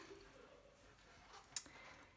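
Near silence: room tone, with one short click about a second and a half in.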